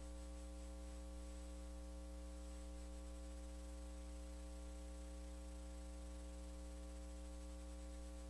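Faint, steady electrical mains hum: a set of constant buzzing tones with a light hiss over them, unchanging throughout.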